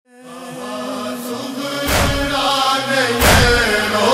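Shia noha (lament) chanted by voices, fading in at the start, with two heavy rhythmic beats of matam (chest-beating) about 1.3 s apart, the first about halfway through and the second near the end.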